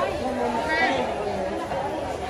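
Chatter of vendors and shoppers talking among the stalls of a busy covered market, several voices at once, with a brief higher voice about a second in.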